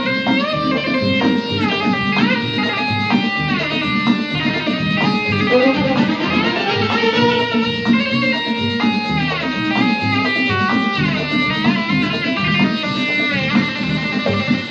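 Arab orchestra playing an instrumental passage of a song, with an electric guitar carrying a melody of quick runs and glides over the ensemble and keyboard.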